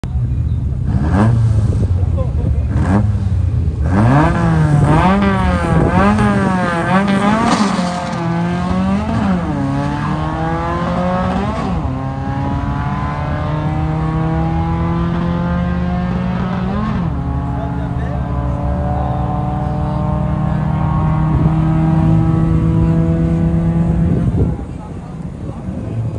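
Two small pickup trucks drag racing: engines blipped at the starting line, then revved repeatedly and driven hard down the strip, the engine note climbing and dropping back at each gear change before a long steady climb.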